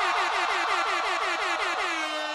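Air horn sound effect played over the PA: rapid repeated blasts, about six a second, each dipping slightly in pitch, turning into one long held blast at the very end.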